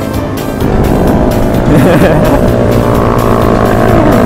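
Motorcycle engine running while riding, with road and wind noise, under background music.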